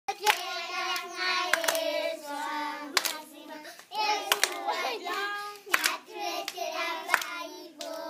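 A group of young children singing a song in Luganda together, clapping their hands about once every second and a half.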